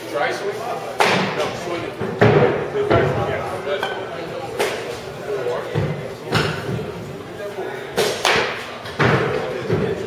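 Bats hitting baseballs during batting-cage practice: a series of sharp impacts a second or two apart, each ringing briefly in the large room, with voices in the background.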